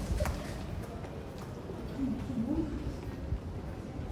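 Pedestrian street ambience: a steady background hum with people's voices in the background, one voice rising a little about two seconds in. A single sharp click comes just after the start.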